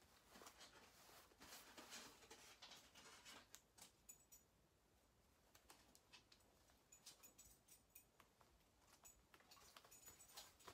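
Near silence, with faint scattered ticks and rustles from fingers handling and smoothing a cotton drawstring bag on a pressing mat.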